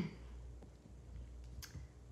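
Faint rubbing of a palm rolling a soft modeling-clay snake back and forth on a paper-covered table, over a steady low hum, with a light click about one and a half seconds in.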